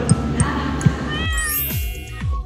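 A cat meow sound effect about a second in, laid over background music with a few light beats, followed near the end by a sweeping transition effect.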